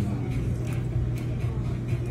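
Steady restaurant room noise: a constant low hum under a haze of background sound, with a few faint light clicks.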